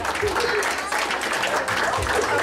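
A room of people applauding, many hands clapping steadily, with voices calling out over the clapping.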